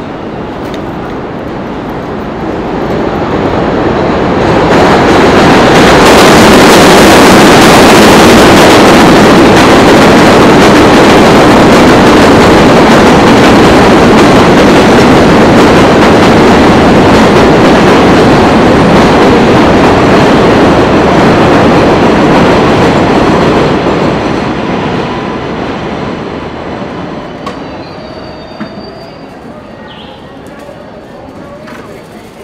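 A New York City subway 7 train passing on the elevated steel viaduct overhead. The noise builds over the first few seconds, stays loud for about twenty seconds, then fades away near the end.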